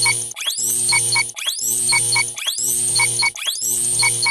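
Countdown-intro sound effect: about once a second, a rising whoosh followed by two short electronic beeps, over a low steady hum.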